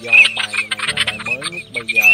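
Recorded teal calls from a bird-trapping lure track: short high notes repeated about twice a second with a rapid rattle, mixed with a man's voice and background music.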